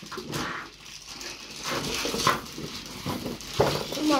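Plastic wrapping crinkling and rustling as a toilet unblocker is pulled out of its plastic bag and cardboard box, with a few short sharp sounds among the rustling.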